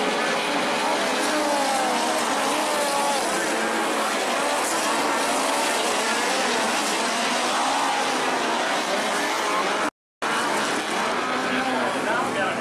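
Several midget race car engines running as the cars circle a dirt oval, their overlapping pitches rising and falling, with crowd voices underneath. The sound cuts out completely for a moment about ten seconds in.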